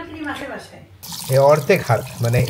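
Water running from a washbasin tap onto a hand. It starts abruptly about a second in, with a voice talking over it.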